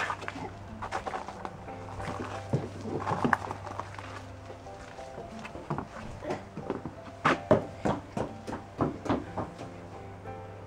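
A toddler's footsteps and scuffs on a wooden deck: scattered light knocks, then a quick run of thumps in the second half as she walks across the boards.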